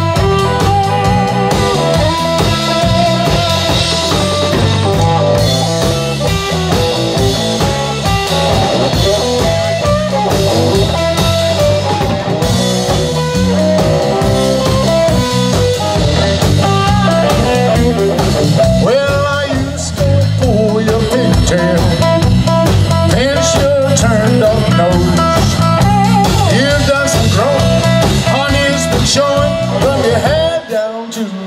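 Live blues-rock band playing an instrumental break: an electric guitar plays a lead line with bent notes over a steady drum kit and bass guitar beat.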